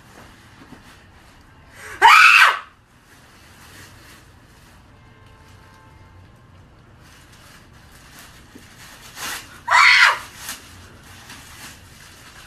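A woman shrieks in excitement at her gifts, two short high-pitched screams that rise and fall, about two seconds in and again near the end.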